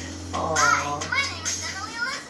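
A young girl's high-pitched cartoon voice, rising and falling in pitch, over a low steady hum that cuts off just before the end.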